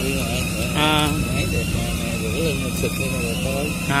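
Indistinct men's voices talking over a steady low machine hum and a faint steady high whine, with a short loud 'ah'-like vocal sound about a second in.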